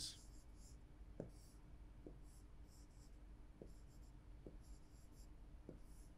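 Faint scratching of a stylus writing on an interactive touchscreen display: short strokes of the pen on the screen, with about five light taps along the way.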